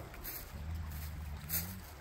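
A cow mooing low and quietly, starting about half a second in and lasting just over a second, its pitch rising slightly at the end. There are faint rustles of dry leaves.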